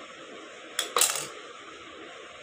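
Scissors clicking twice, about a fifth of a second apart near the middle, the second louder with a brief metallic ring.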